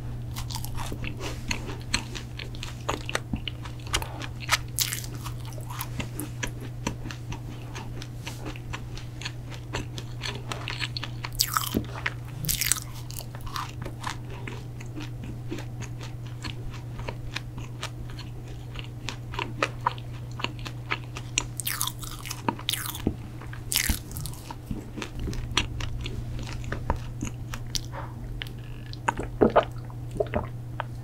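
Close-miked chewing of a crunchy protein cookie: many small crisp crunches, with a few louder crunches now and then. A steady low hum runs underneath.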